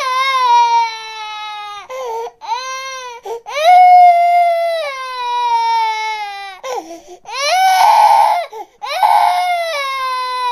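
Toddler crying hard in long, high wails, each sliding down in pitch, with short gasping breaks between them; the wail near the end is rougher and more strained.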